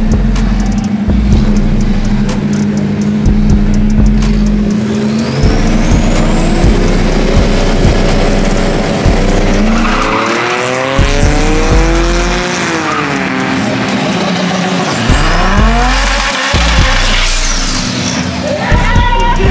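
Drag-race cars at the starting line: an engine revs up from about ten seconds in, holds and falls away, with tyre squeal from burnouts. Background music with a heavy bass line plays throughout.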